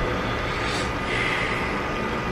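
Steady, even hiss of TV static noise used as an editing effect, with a faint thin whine in it.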